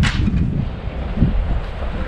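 Wind buffeting the camera microphone: an irregular low rumble of thumps, with a sharp click at the very start.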